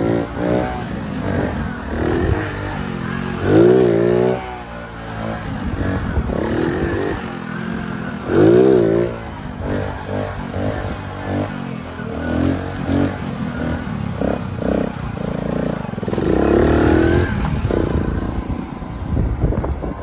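Honda CD70's small single-cylinder four-stroke engine being revved hard on the move, with three strong throttle surges several seconds apart, each rising then falling in pitch, and lighter blips between. The revs come with clutch work, to pop the front wheel up for a wheelie.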